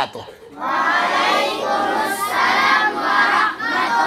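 A group of children's voices calling out together, many voices at once in loud, overlapping phrases, starting about half a second in.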